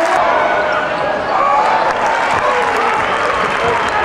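Live basketball game sound in an arena: a steady din of crowd and player voices, with the ball bouncing on the hardwood court.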